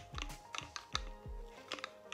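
A baby bottle brush scrubbing inside a plastic spray bottle: quick, irregular clicks and scrapes of the brush against the plastic, with soft background music underneath.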